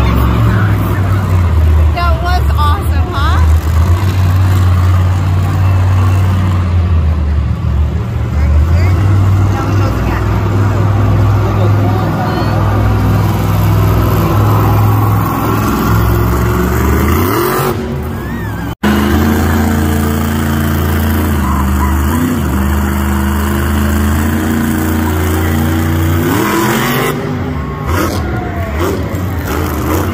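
Monster truck's supercharged V8 running loud and revving as the truck drives and rears up into a wheelie, with a heavy low rumble. The sound breaks off suddenly about two-thirds of the way through and resumes straight away.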